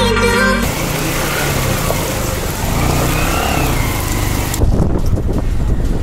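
Background music cuts off about half a second in. Then a moving vehicle's engine rumble and wind and road hiss, recorded from the vehicle on a mountain road. About four and a half seconds in it changes abruptly to a lower, less hissy engine rumble with a few knocks.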